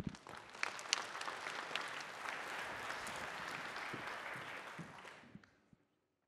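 Audience applauding, with a low thump at the very start; the clapping fades out about five seconds in.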